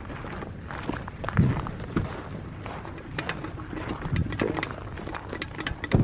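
Footsteps crunching on dry dirt and gravel: irregular sharp crunches that come thicker from about halfway through, over a low rumble.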